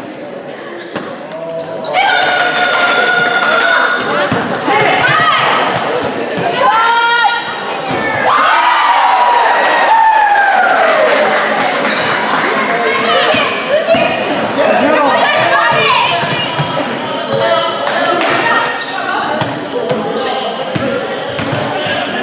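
Basketball bouncing on a hardwood gym floor during play, with shouting from players and spectators and sneaker squeaks, all echoing in the gym.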